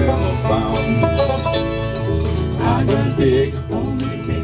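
Acoustic string band playing a bluegrass-style instrumental break on mandolin, acoustic guitar and banjo, the strings plucked in a steady, busy rhythm.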